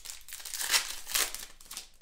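Foil wrapper of a trading card pack being torn open and crinkled by hand, a run of sharp rustles, loudest near the middle.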